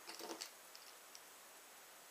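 Near silence, with a few faint light clicks in the first half-second from a revolver speed loader loaded with cartridges being handled.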